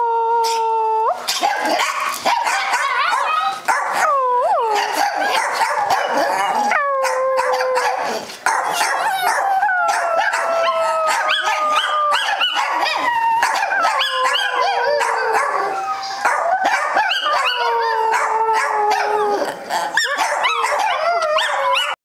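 Chihuahuas howling together: a run of long howls, each rising quickly and then sliding slowly down in pitch, one after another, sometimes overlapping.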